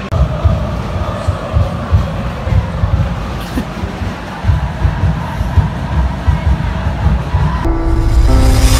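Football stadium crowd ambience picked up on a phone microphone, with a heavy, uneven low rumble on the mic. Near the end it cuts to background music with sustained notes.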